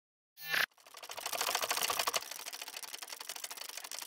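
Logo-intro sound effect: a short swell about half a second in, then a dense, fast crackle of clicks that thins out after about two seconds.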